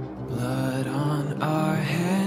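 Music: the slow intro of a song, sustained low notes that swell about half a second in, before any singing.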